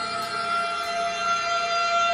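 A steady synthetic tone held at one pitch: a sound effect for magical energy gathering into a glowing ball in a hand.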